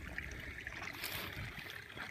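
Faint trickle of a small runoff stream flowing down from a pond, with light rustling of weeds as someone walks through them.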